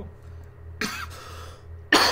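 A man coughing twice, the second cough louder, near the end.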